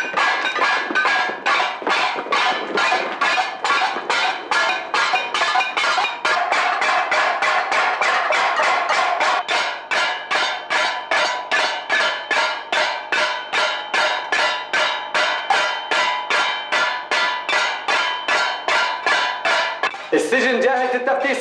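Many wooden spoons beaten in unison against metal plates and bowls, a steady clanging rhythm of about two and a half strikes a second: a crowd of prisoners making a protest din.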